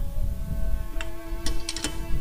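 A few sharp metallic clicks, a lug wrench working the lug nuts on a car wheel: one about a second in, then a quick cluster near the end. Soft background music with held notes plays underneath.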